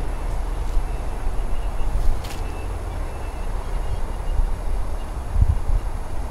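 Wind buffeting the camera's microphone outdoors: a steady, unsteady low rumble, with a sharp click about two seconds in and a low thump near the end.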